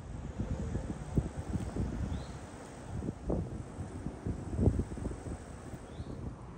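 Wind buffeting the microphone outdoors: a low, irregular rumble with short gusty surges.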